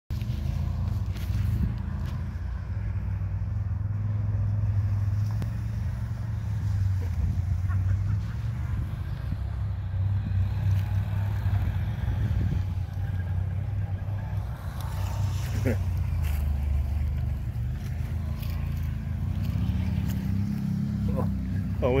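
ATV engines running at low revs, a steady low hum with little change in pitch.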